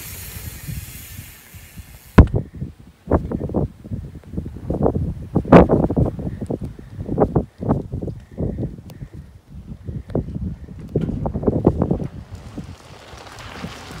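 Wind buffeting a handheld phone's microphone in irregular gusts, heard as uneven rumbles and thumps, with a sharp knock a couple of seconds in.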